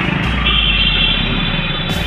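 Busy road traffic heard from a moving two-wheeler: motorcycle and car engines running. A steady, high-pitched multi-tone sound starts about half a second in and holds.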